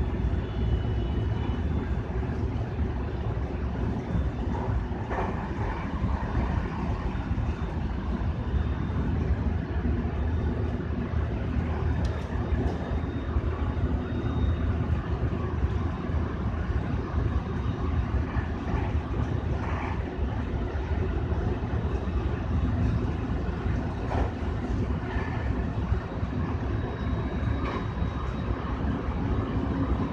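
Electric multiple-unit train running steadily at speed on open track, a continuous low rumble of running gear and wheels on rails heard from inside the front car behind the driver's cab, with a few faint ticks along the way.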